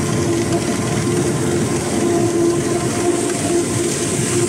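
Krone BigX 780 self-propelled forage harvester running under load while chopping maize: a steady, loud mechanical drone with a steady humming note over it.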